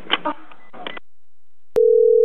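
Faint, narrow-band telephone-line voice, then a pause, a click, and a single steady telephone line tone starting near the end.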